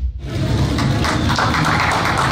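A crowd applauding, a steady patter of many hands that starts a moment in as the music cuts off.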